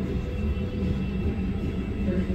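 Glassblowing glory hole furnace burning with a steady low rumble.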